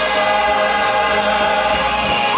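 Live indie rock band playing on stage: electric guitars and bass holding long, sustained notes together with a choir-like wash of singing voices.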